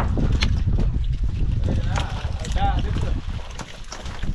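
Steady low rumble of wind on the microphone on a fishing boat's open deck, easing near the end. A few sharp knocks sound through it, and a voice calls out briefly a little past halfway.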